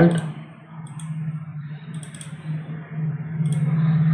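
A few computer mouse clicks, about four, over a steady low hum.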